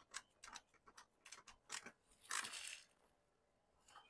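Faint, irregular light clicks from a screwdriver turning a ground screw down on a metal junction box, then a short scrape about halfway through as the driver comes away.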